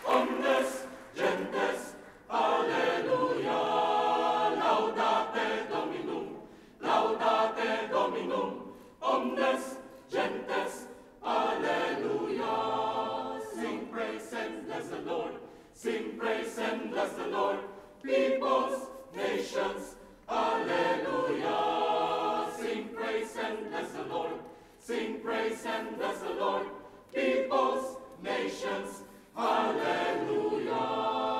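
A choir singing in phrases of a few seconds each, with short breaks between them.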